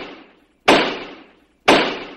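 A sharp impact sound effect repeated identically about once a second: two hits, each dying away over well under a second, following the fading tail of an earlier one.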